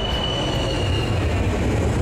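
Jet airliner's engines at takeoff power, a steady loud rumble, with a thin high whine that fades out about a second in.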